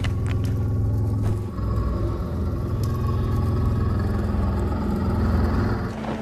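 Deep, steady rumble of a motorcycle engine idling, a film sound effect.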